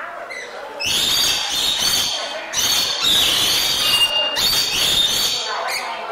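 Rainbow lorikeets screeching and chattering in repeated shrill bursts, each lasting up to about a second and a half.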